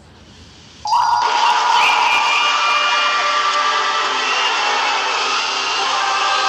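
A faint hiss, then about a second in a sudden, loud, harsh droning noise starts, with several steady tones held over a dense noisy wash, played as the soundtrack of a 'scary logo' clip.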